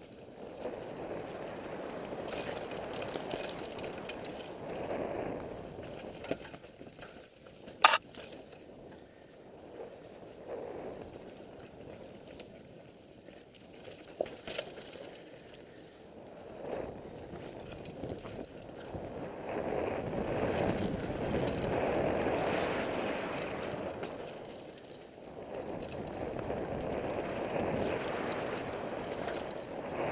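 Mountain bike rolling fast down a dirt singletrack, heard from a camera on the bike or rider: a rough rolling rumble with rattles that rises and falls with speed, loudest a little past the two-thirds mark. A sharp knock about eight seconds in, and a smaller one around fourteen seconds.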